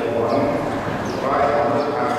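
Buddhist recitation: drawn-out, sing-song chanting by voices, with a rise in pitch about a second in.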